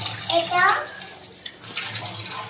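Tap water running into a stainless-steel kitchen sink while a woman splashes it onto her face with her hands to wash it clean. A brief voice comes in about half a second in.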